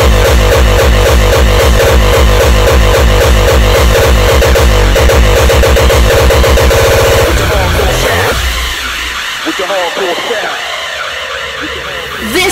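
Uptempo hardcore music playing loud, driven by a fast, even kick drum. About eight seconds in the kicks drop out and the track falls into a quieter breakdown.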